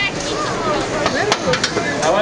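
Overlapping voices and chatter, with one sharp click about halfway through.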